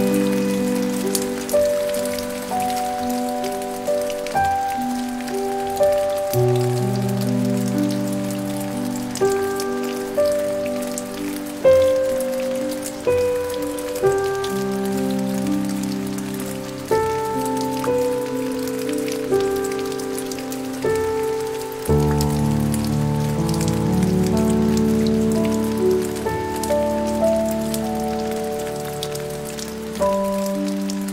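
Soft, slow piano playing a gentle melody over chords, mixed with steady rain and the patter of raindrops. About two-thirds of the way through, deeper low notes come in and are held under the melody.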